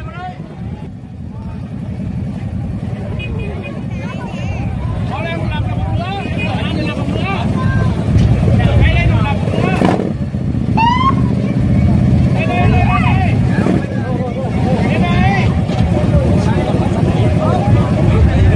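Big V-twin touring motorcycle engine running with a low rumble that grows steadily louder, with crowd voices and shouts over it.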